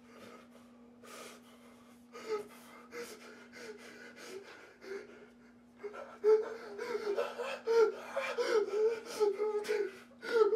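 A man whimpering and gasping in fear. It is faint at first, then grows louder and comes in quick, wavering, high-pitched whimpers from about six seconds in.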